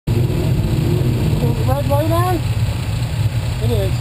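Dirt-track open sportsman race car's V8 engine idling steadily with a rapid, even pulse, heard close up from a camera mounted on the car.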